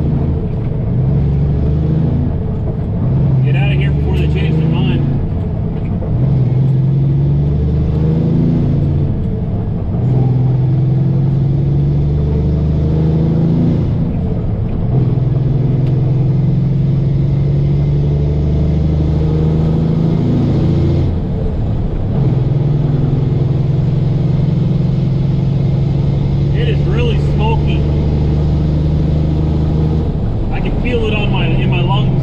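Semi-truck engine heard from inside the cab, pulling up through the gears as the truck gains speed. The engine note breaks and resumes at about five upshifts, spaced further apart as it goes, then runs steadily in a high gear over the last part.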